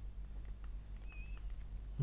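Faint taps and ticks of a stylus writing on a tablet screen over a steady low electrical hum, with one brief, faint high squeak a little past one second.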